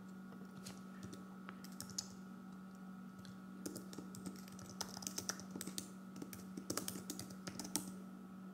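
Typing on a slim white computer keyboard: a few scattered keystrokes at first, then a quicker run of key clicks from about halfway in, over a faint steady hum.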